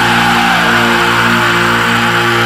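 Distorted electric guitars holding one sustained chord, ringing out near the end of a hardcore song, with a faint sliding tone above it.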